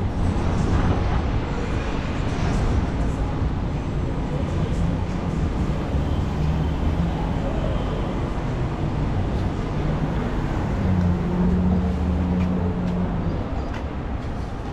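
City street traffic: the low rumble of a vehicle engine running, under a steady wash of road noise, with the engine hum loudest about eleven seconds in.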